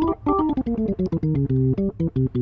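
Hammond-style tonewheel organ from the Arturia B3 V2 plugin playing a falling run of notes and then short repeated chords, with the rotary speaker simulation set to slow.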